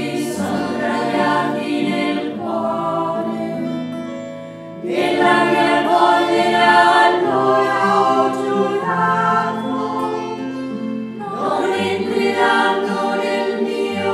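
A choir of nuns singing a slow sacred hymn in long held phrases, with short breaks between phrases a third of the way through and again near the end.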